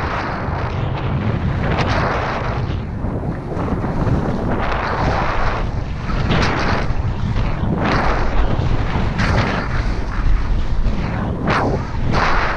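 Snowboard riding down packed snow: the edges hiss and scrape over the snow in swells every second or two as it turns. Wind buffets the microphone in a loud, steady low rumble.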